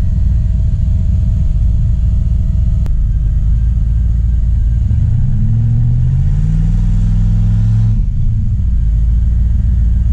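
Turbocharged engine of an RX-7 idling, heard from inside the cabin. About five seconds in it revs up a little and holds there, then settles back to idle at about eight seconds.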